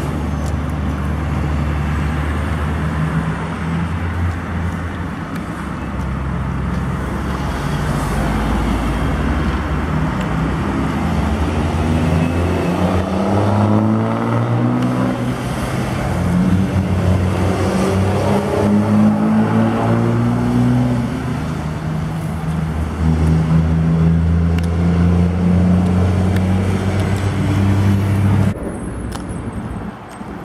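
Heavy diesel truck engines pulling past on a highway, with road noise. Midway the engine pitch climbs several times over, stepping back down between climbs as a truck works up through its gears. The sound drops off abruptly near the end.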